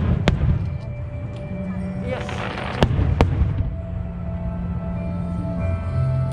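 Aerial fireworks shells bursting: two sharp bangs at the start, a spell of crackling about two seconds in, then two more bangs about a second later.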